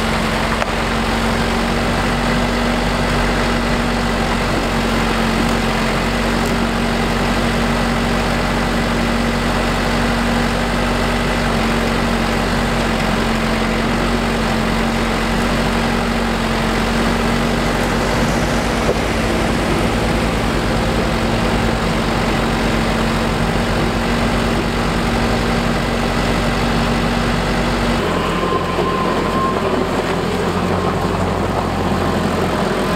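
Branson 5025C tractor's diesel engine running at a steady speed while it powers the hydraulic timber crane loading logs. The even hum changes abruptly near the end.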